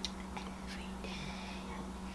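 A person whispering faintly over a steady low electrical hum, with a light click right at the start.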